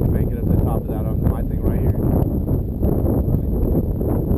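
Steady low rumble of a vehicle driving along a dirt road, heard from on board, with indistinct voices over it.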